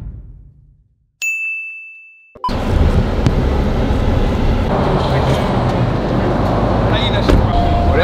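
A single bright chime rings out suddenly about a second in and fades away over about a second. Then loud steady outdoor street noise, a rumbling roar of traffic and wind, starts abruptly and carries on.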